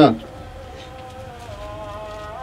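A soft, sustained keyboard chord held under the preaching, its notes steady, with the chord shifting slightly lower about one and a half seconds in.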